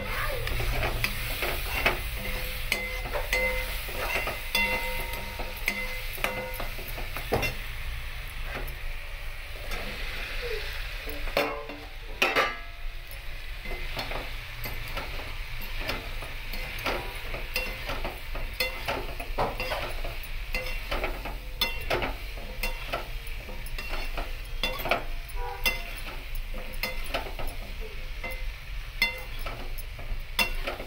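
A metal slotted spoon stirring and scraping in a metal kadhai, with many sharp clinks over the steady sizzle of masala frying in oil, and a louder burst about twelve seconds in. Later the spoon turns cauliflower and potato pieces through the masala.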